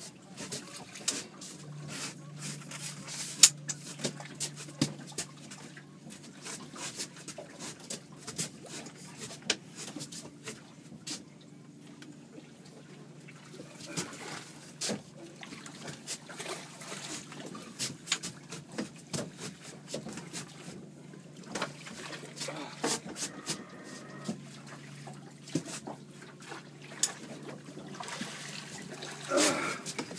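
Irregular clicks and knocks of fishing rod, reel and landing net being handled on a boat while a king salmon is brought to the net, with some water splashing, over a low steady hum that starts about two seconds in and drops out briefly near the end.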